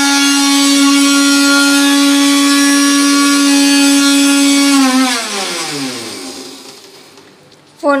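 Electric mixer grinder with a steel jar, its motor running at a steady high pitch, then switched off about five seconds in and winding down with falling pitch and fading until it stops.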